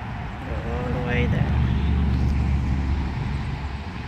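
A car passing on a road: a low rumble that swells about half a second in and eases off near the end.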